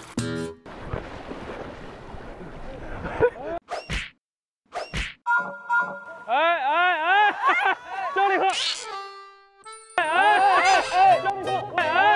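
Post-production comedy sound effects. A noisy wash is followed by two sharp hits with a brief dead silence between them. Then comes a warbling, siren-like effect, a rising whistle-like glide and a short held tone, before beat-driven music starts about two-thirds of the way through.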